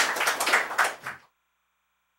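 A small audience applauding, a patter of many separate hand claps, which cuts off abruptly a little over a second in.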